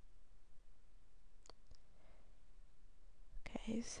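Faint room tone with two faint computer mouse clicks about a second and a half in, a quarter second apart. Soft, almost whispered speech begins near the end.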